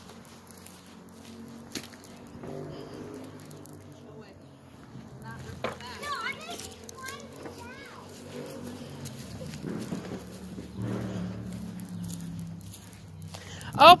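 Children and adults calling out and talking indistinctly in the distance, with a few brief high-pitched calls a little past the middle, over a low steady drone.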